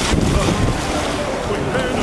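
Wind buffeting the camcorder's microphone: a steady, dense rush of noise, heaviest in the low end.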